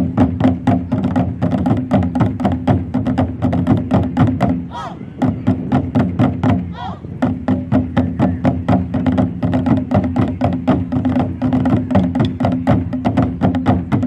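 Percussion-driven music: rapid, even drum strikes, about five a second, over a low steady tone that drops out briefly twice near the middle.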